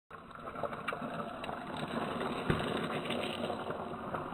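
Mountain bike tyres rolling and crunching over loose gravel as the bike approaches, with scattered clicks and one sharp knock about two and a half seconds in.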